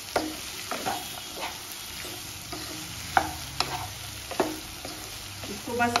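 Mixed vegetables sizzling as they are stir-fried on high flame in a nonstick kadai, stirred with a plastic spatula that scrapes the pan and gives a few sharp knocks against it.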